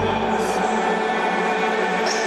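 Background music: a held chord of several steady notes with a choir-like quality, the bass cutting out just after the start.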